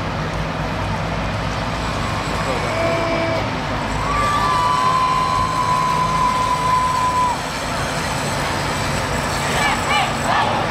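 Heavy trucks rolling slowly past with a steady diesel engine rumble. About three seconds in a horn sounds a short note, then a higher horn note is held for about three seconds; shouting begins near the end.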